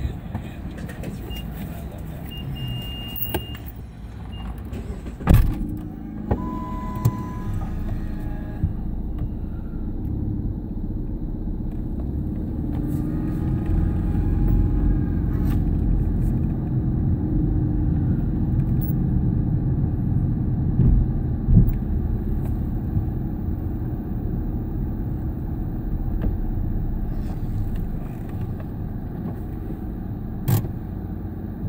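Car engine and road rumble heard from inside the cabin as the car drives, swelling for a while in the middle. A sharp click about five seconds in, then a short steady tone a second later.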